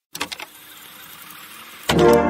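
A few quick sharp clicks, then a steady mechanical whirring hiss lasting just over a second, cut off as music starts again.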